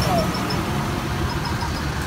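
A steady bed of road-traffic and engine noise with a low hum, and voices in the background. Two short runs of faint high chirps or ticks come near the start and again past the middle.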